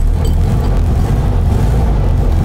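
The air-cooled flat-four engine of a 1980 VW Beetle 1300, just started with the ignition key and running loudly and steadily.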